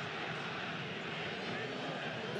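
Steady, even stadium crowd noise from a televised football match, heard fairly quietly through a TV speaker.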